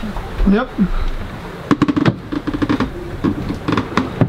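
Short clicks and knocks of mugs and crockery being handled in a sailboat's galley, in two quick clusters: about two seconds in and again near the end.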